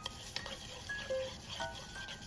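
Wooden chopsticks stirring a raw egg and dry seasoning in a bowl, with a few light clicks as they knock the bowl's side. Soft background music of short melodic notes plays alongside.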